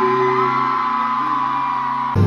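Live indie band music filmed from the audience: electric guitar and band holding a sustained chord, with a few rising whoops from fans near the start.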